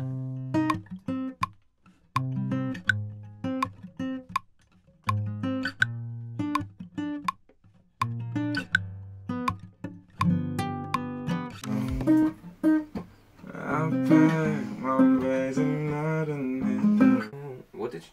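Steel-string acoustic guitar playing a slow chord progression, each chord picked or struck and left to ring with short gaps between. About twelve seconds in, a voice begins singing a wordless melody over the guitar.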